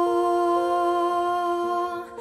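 A woman's singing voice holding one long steady note, hummed or on an open vowel, with a quieter second musical part shifting pitch twice alongside it.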